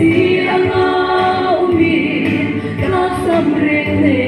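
A woman singing a slow gospel song in Hmar into a handheld microphone, amplified through a PA. She holds long notes with small slides between them.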